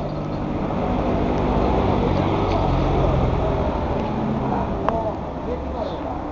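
A motorcycle engine idling steadily, with voices talking over it.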